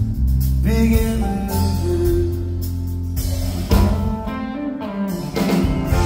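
Live band music from the audience: electric guitar, bass and drums playing, with a male voice singing.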